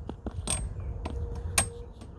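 Light metal clicks and clinks as a lawn mower's metal pull-cord guide ring is fitted onto the handle, with two sharp ringing clinks about a second apart.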